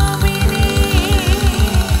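Live band music: a fast, even run of deep drum beats, about seven a second, under a held, wavering melody line.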